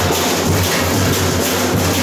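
A carnival bloco's drum section playing live: strap-carried drums beating a steady, fast rhythm.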